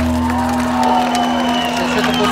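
Live band music played loud over a festival PA, with a held low note, and a crowd cheering and shouting near the microphone. The bass thins out under a second in.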